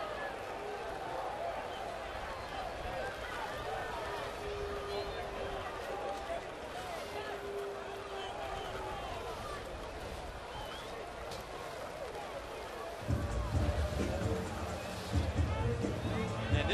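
Ballpark crowd ambience: many indistinct fan voices over stadium music, with a held note for a few seconds in the first half. About thirteen seconds in, a deep low rumble sets in and the sound gets louder.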